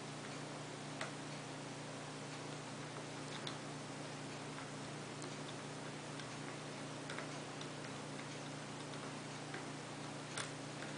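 Faint, sparse clicks of a steel lock pick working the pin stacks of a Corbin small-format interchangeable core under tension, a few seconds apart, over a steady hiss and low hum.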